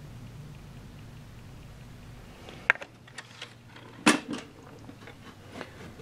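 The hinged wooden door of a model railway control panel being swung closed: a few sharp knocks and clicks, the loudest about four seconds in, after a low steady hum in the first half.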